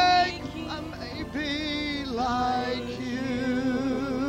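A worship chorus sung by a congregation, with one voice carrying long held notes with a wide vibrato over a steady lower sustained pitch.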